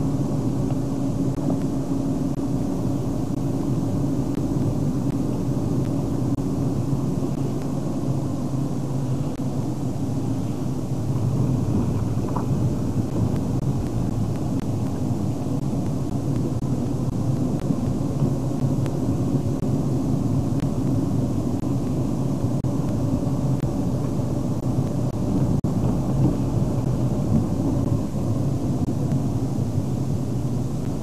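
Steady engine drone and road rumble inside a moving car's cabin, cruising at an even speed.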